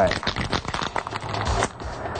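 Aerosol spray paint can being shaken, its mixing ball rattling in a rapid, uneven run of clicks.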